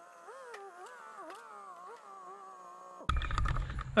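A faint, wavering pitched sound with several overtones, which stops about three seconds in when louder outdoor background noise cuts in.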